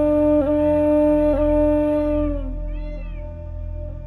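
Instrumental music: a long held flute note, broken twice by brief dipping ornaments, over a low steady drone. The note fades out a little past halfway, and short high rise-and-fall calls sound around the middle.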